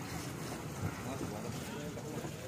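Fishing-harbour ambience: a steady low rumble of boats with wind on the microphone, under distant voices, and a brief knock about a second in.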